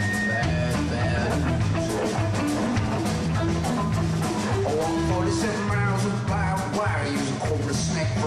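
Rock band playing an instrumental stretch: electric guitar over sustained bass notes and a steady drum-kit beat.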